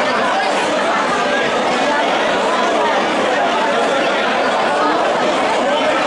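Crowd chatter: many people talking at once, a steady, loud hubbub of overlapping voices with no single speaker standing out.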